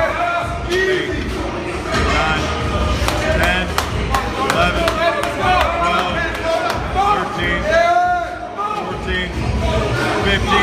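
Several men shouting encouragement to a lifter straining through a bench press set, with sharp hand claps among the shouts.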